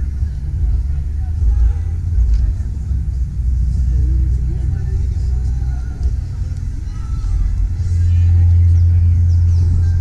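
A heavy, steady low rumble, loudest near the end, with people talking in the background.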